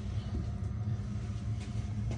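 A steady low mechanical hum.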